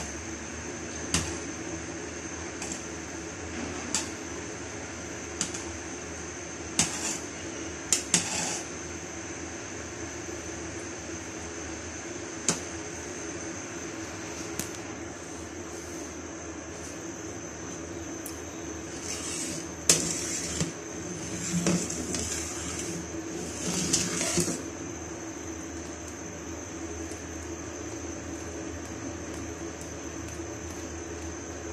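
Steel ladle clinking against the side of a large aluminium cooking pot while stirring thick kadhi: single sharp clinks every second or so at first, then a busier run of clatter and scraping past the middle. A steady hum with a thin high whine runs underneath.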